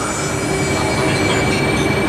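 Train running, a steady rumble of wheels on rail with a thin, steady high-pitched whine over it.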